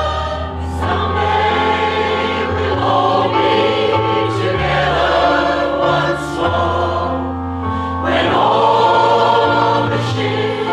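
Community choir of mixed men's and women's voices singing in parts, holding long notes over a sustained low line.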